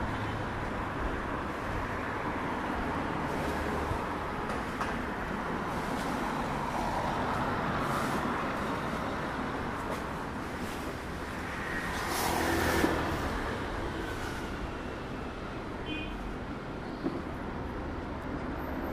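City road traffic: a steady wash of cars passing, with one vehicle passing louder about twelve seconds in.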